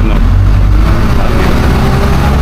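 City bus engine and road noise heard from inside the moving bus: a loud, steady low rumble.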